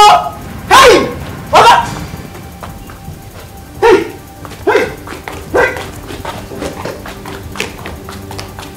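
About six short, loud cries, each falling in pitch and spaced roughly a second apart, the first two the loudest, over a quiet background film score.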